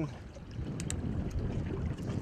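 Low, steady wind and sea noise on an open boat, with a couple of faint, sharp clicks just under a second in.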